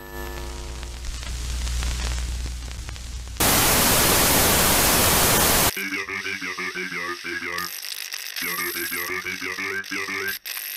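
Analog-TV glitch sound effects: a low electrical hum with hiss, then a loud burst of white-noise static lasting about two seconds that cuts off abruptly, followed by a choppy, warbling glitch sound.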